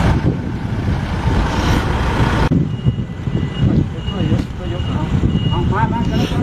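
A high electronic vehicle warning beeper sounding about twice a second, over low street rumble and murmuring voices, after a loud rushing noise that cuts off abruptly about two and a half seconds in.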